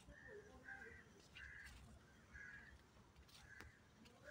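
Faint, short bird calls, repeated several times about every half second to second.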